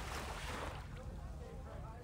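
Wind buffeting the microphone with a low, uneven rumble, over a steady wash of sea at the shore.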